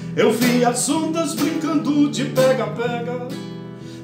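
Acoustic guitar strummed and picked in a steady rhythm, a solo instrumental passage of a Brazilian folk song.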